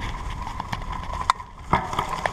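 Footsteps of a person walking on a forest path: a few irregular steps, the two clearest about one and a quarter and one and three-quarter seconds in.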